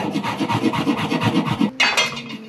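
Chef's knife rapidly chopping fresh basil on a wooden cutting board, a quick even run of strokes that stops near the end, followed by a brief louder noise.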